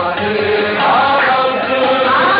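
Male qawwali lead singer singing live into a microphone, his voice sliding between held notes, with the qawwali party's music behind him.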